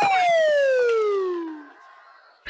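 A comic falling-whistle sound effect: one whistle-like tone sliding steadily down in pitch for about a second and a half, then fading out.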